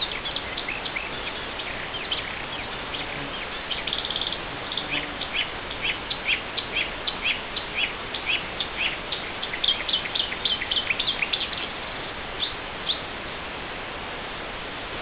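Small birds chirping: many short, high notes in quick runs, busiest in the middle and thinning out near the end, over a steady hiss.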